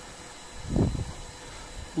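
A short, low, muffled rumble that swells and fades just under a second in.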